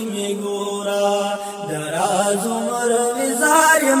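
Young male voice singing a Pashto naat, drawing out long, gently wavering held notes over a steady low vocal drone.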